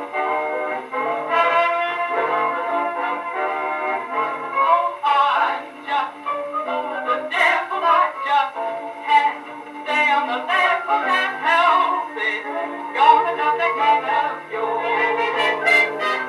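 A 1939 dance orchestra recording on a 78 rpm record, with brass prominent in an instrumental passage. A singer comes in near the end.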